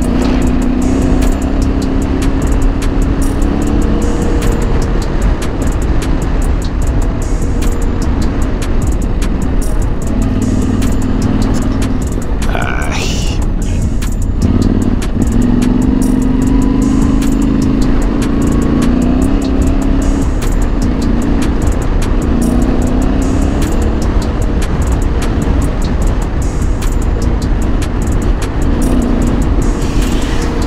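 Yamaha Ténéré 700's parallel-twin engine running under way on a gravel road, its pitch rising and falling as the throttle is opened and closed, over a steady rush of wind and tyre noise. A brief higher sweep comes about thirteen seconds in.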